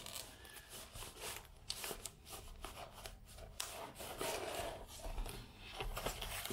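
Cardboard box handled by hands, its flaps folded and pressed: faint, irregular rubbing and scraping of cardboard with short rustles.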